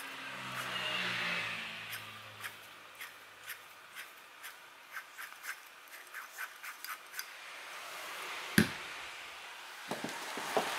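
Kawasaki Balius starter motor, off the bike, turned slowly by hand at its pinion: a run of light clicks about two a second, coming faster for a while from about five seconds in. The motor turns heavy and gritty, the starter fault behind the bike's sluggish cranking. One loud knock near the end as it is set down.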